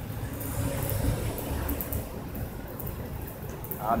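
Steady low outdoor rumble with no distinct event.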